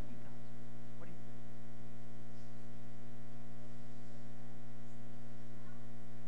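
Steady electrical mains hum with its overtones, unchanging throughout, with a faint short voice about a second in.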